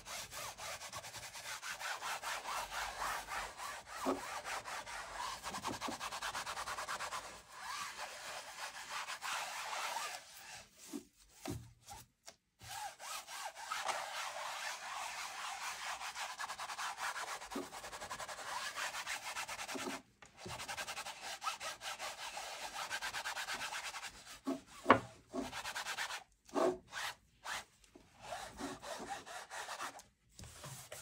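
A soft cotton wad rubbed back and forth over silver leaf on a canvas board, burnishing the leaf down and sweeping off loose flakes. It is a steady dry swishing that stops briefly several times, with a few short knocks in the second half.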